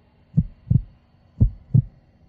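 Heartbeat sound effect: deep double thumps, lub-dub, about once a second. Two beats fall in this stretch, played for suspense during a decision countdown.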